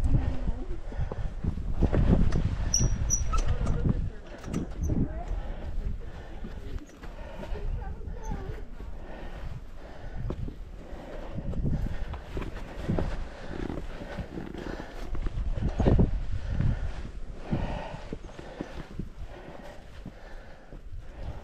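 Hiker's footsteps on bare sandstone, with indistinct voices of other hikers in the background. Wind rumbles on the microphone for the first few seconds.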